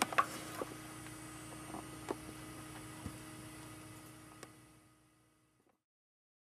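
Faint scattered clicks and light taps of a Wurlitzer 200 electric piano hammer being twisted and pulled out of the action, over a faint steady hum. The sound stops abruptly about four and a half seconds in.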